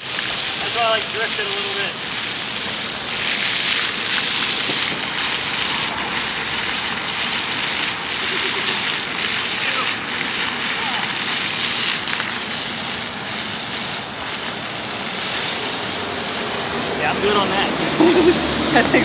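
Ground-level plaza fountain jets spraying and splashing onto wet pavement: a steady, even rush of water, with faint voices about a second in and near the end.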